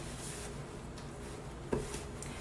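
Faint rubbing of a paper towel being wiped over a wet chalkboard, with one short knock near the end.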